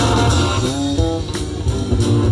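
A live band playing: electric guitar notes over bass guitar and drum kit.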